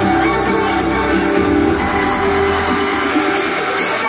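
Loud electronic dance music playing over a large concert sound system, heard from within the crowd. The deep bass drops away about halfway through.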